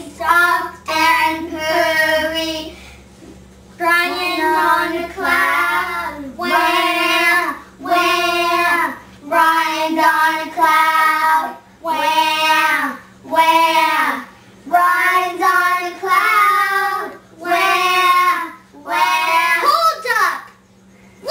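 Young girls singing a slow tune to soothe a baby, in short held phrases of about a second each with brief pauses between them.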